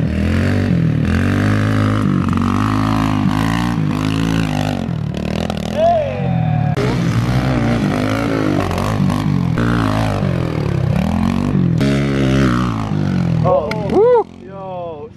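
Small dirt bike engine revving hard as it is ridden, its pitch climbing and dropping over and over with the throttle.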